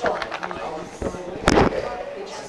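Many people talking at once in a room, overlapping chatter of small groups, with one loud sharp knock about one and a half seconds in.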